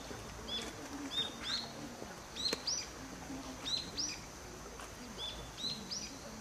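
Small birds chirping: short, high, hooked notes repeating about twice a second, with a single sharp click about halfway through.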